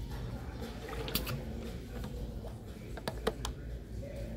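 Plastic water bottle being drunk from and handled close to the microphone: a sharp click about a second in and a quick run of clicks near the end, over a low steady rumble.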